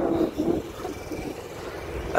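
Road traffic on a bridge: a passing motor vehicle's engine, loudest in the first half second, then a lower steady rumble of traffic.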